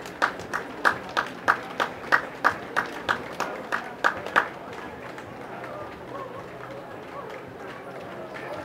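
A steady run of sharp knocks or beats, about three a second, which stops about four and a half seconds in, over the murmur of a large outdoor crowd.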